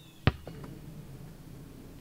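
A basketball bouncing once, hard, on pavement, with a fainter second knock a quarter second later.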